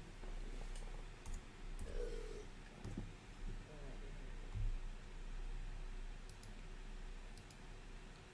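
A few scattered, sharp clicks of a computer mouse and keyboard over a steady low hum.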